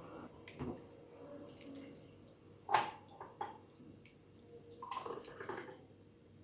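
A hand working soaked rice in a plastic bowl of water, making small splashes and drips. The sharpest splash comes a little before halfway, with a cluster of sloshing near the end.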